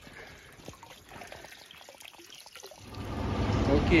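Water running in a levada irrigation channel, faint at first. About three seconds in, a louder, steady low rushing noise sets in.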